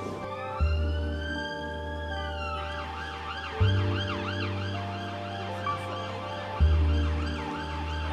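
An emergency vehicle siren on the street: one slow rising and falling wail, then a fast yelp that rises and falls about three times a second until near the end. Background music with a deep bass note every three seconds plays underneath.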